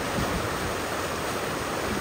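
Muddy floodwater rushing steadily in a river swollen by an overnight storm, running fast and deep over a washed-out road.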